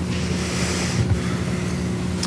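Steady low hum and hiss of room tone picked up by the council chamber's microphones, with a brief soft rush of noise in the first second and a low thump about a second in.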